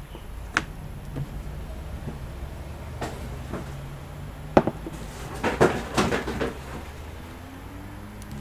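A few sharp clicks and knocks, one at a time early on and then a quick cluster a little past the middle, over a steady low hum.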